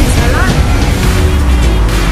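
Loud trailer background music with a heavy, steady low end, with a short rising glide about half a second in.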